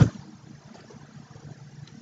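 A single sharp click of a computer keyboard key at the very start, then only a faint steady low hum of room tone.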